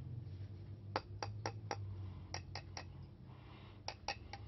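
A knife blade tapping the frosted globe of a cheap LED bulb, making about eight light, sharp clicks in quick groups. The tapping tests whether the globe is glass or plastic; it is plastic.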